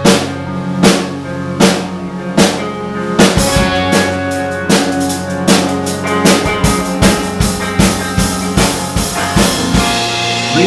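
Live indie rock band playing an instrumental passage with electric guitars, bass and a drum kit. The drum hits fall about once every 0.8 s at first, then the drumming gets busier and the band fuller about three seconds in.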